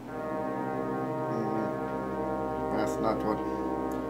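A steady, sustained droning tone with many overtones starts suddenly and holds unchanged. A brief wavering vocal sound comes over it about three seconds in.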